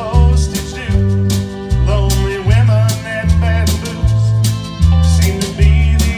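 Live country band: a bass line played on a Roland V-Accordion and a drum kit with regular cymbal hits, with pedal steel guitar and a lead melody line on top.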